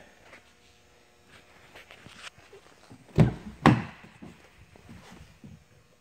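Two dull thunks about half a second apart, about three seconds in: a car's front passenger door being unlatched and swung open.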